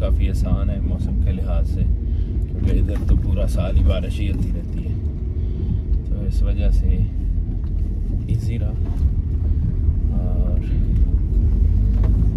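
Steady low rumble of a moving car heard from inside its cabin, with a man's voice coming in at intervals.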